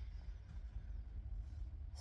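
Quiet room tone with a steady low hum throughout.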